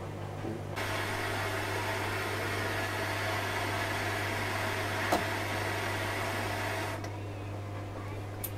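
Gas cartridge blowtorch burning with a steady hiss, cut off abruptly about seven seconds in as the valve is closed. A single sharp click about five seconds in.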